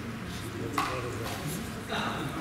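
Sharp slap of hands on skin as two wrestlers hand-fight: one loud smack under a second in and a softer one near the end, over murmuring voices.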